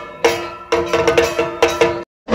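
Percussive folk-dance accompaniment: sharp rhythmic strikes over a steady ringing tone, quickening about halfway through from about two strikes a second to a rapid run of strikes.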